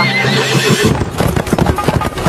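The end of a horse's whinny, then galloping hoofbeats in a quick rhythm starting about a second in.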